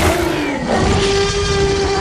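Sound effects on an animated advertising graphic: a sweeping whoosh at the start, then a steady, held tone with several overtones from a little under a second in.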